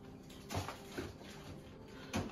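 Faint rustling and a couple of soft knocks as frozen food packages are shifted in an open freezer drawer's wire basket, about half a second and one second in.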